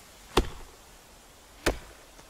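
Two sharp, heavy knocks about 1.3 seconds apart, part of an evenly paced series of blows, over a faint steady hiss.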